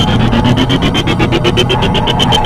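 Electronic sound-design texture: a low drone under a rapid glitchy stutter of about ten pulses a second, with a high pulsing tone and a pitch that rises through the first half.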